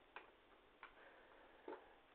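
Three faint clicks, roughly a second apart or less, over quiet room tone, with a faint high tone between the second and third.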